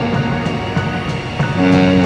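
Electro swing music in an instrumental passage, with held notes over a rhythmic backing that gets louder about one and a half seconds in.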